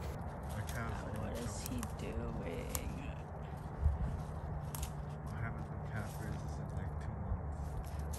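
Faint, indistinct voices in the first half, a sudden thump about halfway, then light crackling steps over snow and dry leaves.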